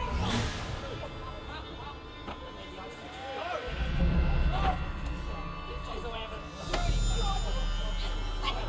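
A group of actors calling out in excited exclamations and cries, with no clear words, over a music score with a low bass drone. A bright rushing swell sounds just after the start and again about seven seconds in.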